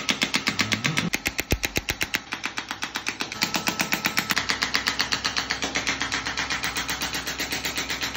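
Radial shockwave therapy handpiece firing against a patient's shoulder: a rapid, even train of sharp clicks that runs without a break.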